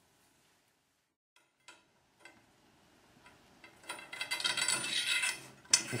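Small steel bolts and nuts clicking and clinking against aluminium mill rails: a few single clicks, then a couple of seconds of dense metallic clinking and rattling near the end.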